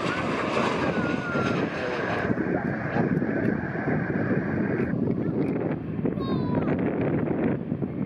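Jet engines of a Ryanair Boeing 737 airliner running as it lands, a steady noisy rush with wind on the microphone. The hiss in the sound thins out a little past two seconds in and again about five seconds in.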